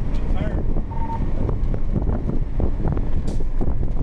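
Fire ladder truck's diesel engine and road noise rumbling steadily inside the cab as it drives, with a short beep about a second in.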